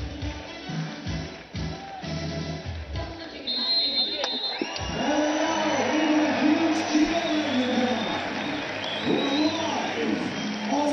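Music playing over the stadium loudspeakers, with the crowd underneath. A short, high whistle blast comes about three and a half seconds in. From about five seconds in, the sound grows louder as a voice comes over the loudspeakers on top of the music.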